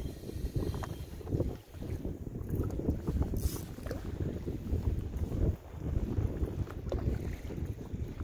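Wind buffeting the microphone on open water, a gusty low rumble that rises and falls, with a brief faint click about three and a half seconds in.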